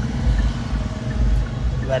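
Low steady rumble of a Hyundai Creta's engine idling, heard from inside the cabin.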